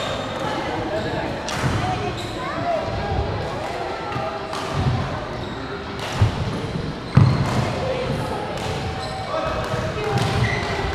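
Badminton play on a wooden court in a large, echoing sports hall: sharp racquet strikes on the shuttlecock at uneven gaps, the loudest two about a second apart near the middle, with an occasional shoe squeak and a steady background of voices from the hall.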